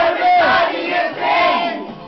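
A group of people singing loudly together into a corded karaoke-style microphone, several voices at once.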